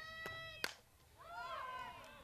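A softball bat meets a pitched ball with one sharp crack about two-thirds of a second in. It is followed by high, wavering cries that rise and fall.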